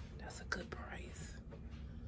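A person whispering briefly, for about a second near the start, over a steady low room hum.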